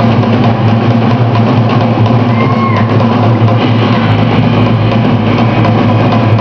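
Amateur rock band playing live and loud: drum kit, electric bass and electric guitar together in a steady, continuous rock groove.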